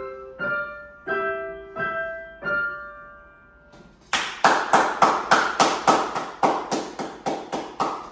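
Two pianos playing the closing bars of a duet, held notes and chords that fade out about three and a half seconds in. Then one person claps steadily, about three or four claps a second.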